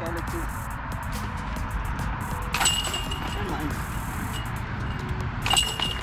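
Discs striking a metal disc golf basket twice, about two and a half seconds and five and a half seconds in, each a sharp metallic clink with a short ring, over steady wind rumble on the microphone.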